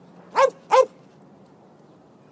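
A dog barking twice in quick succession, two short loud barks.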